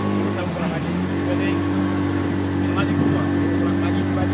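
A small motorboat's engine running steadily under way; its note wavers briefly about half a second in, then settles at a slightly higher pitch.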